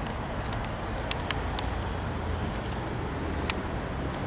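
Steady outdoor background noise with a low rumble, like distant road traffic, with about seven light, sharp clicks scattered irregularly through it.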